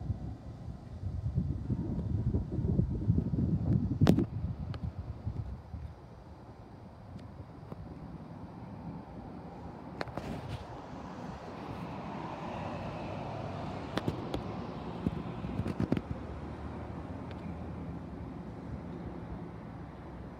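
Low rumble of a Long Island Rail Road diesel train approaching in the distance, with gusty wind noise on the microphone that is strongest in the first few seconds. A few sharp clicks sound through it, the loudest about four seconds in.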